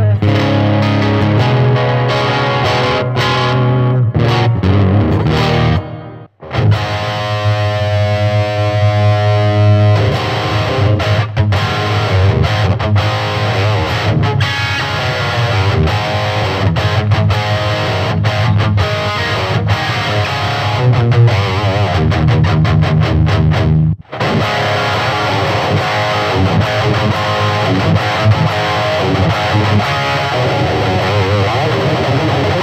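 Electric guitar played through a Peavey Vypyr 15-watt digital modelling amplifier. The playing stops briefly twice, about six seconds in and again near 24 seconds, and after the first stop a chord is left ringing for a few seconds.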